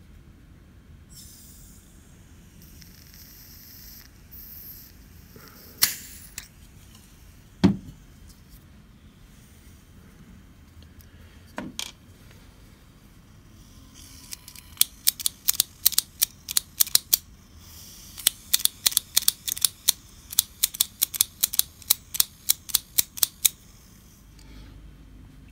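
Butane hissing as a vintage Ronson Varaflame lighter is filled from a gas can, followed by a few knocks. Then two long runs of rapid clicks, about four or five a second, as the lighter's flint striker is worked over and over, sparking but not lighting, with a hiss of gas leaking from around the flame adjustment mechanism.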